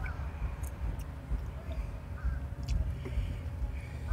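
Quiet handling sounds of a rubber hose being worked onto an oil catch can's fitting by hand: a few light clicks over a low steady rumble.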